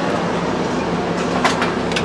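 Steady machine hum and rushing noise inside a tool truck, with a couple of light clicks near the end.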